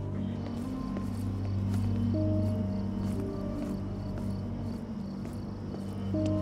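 Background score music of sustained low notes, with crickets chirping steadily in a quick regular rhythm.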